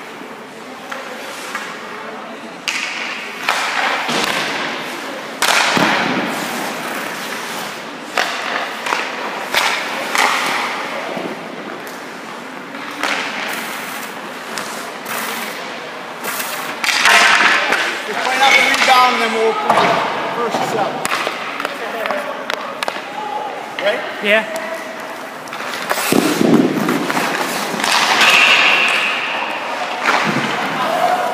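Hockey shooting drill: repeated sharp knocks and thuds of sticks and pucks, with pucks hitting goalie pads, the boards and the net, and skate blades scraping the ice.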